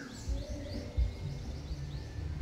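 Birds chirping in the background, with many short, quick falling chirps, and a few low thumps on the microphone, the loudest about a second in.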